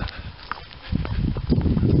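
Footsteps and low rumbling noise on a handheld camera's microphone as the person holding it walks. The rumble drops briefly in the first second, then comes back with a few sharp clicks.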